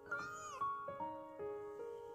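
A single short cat meow, about half a second long, a little after the start, over soft piano music.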